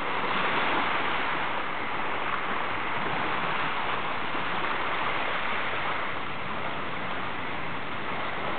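Steady rush of surf on the shore, an even hiss with no single wave standing out.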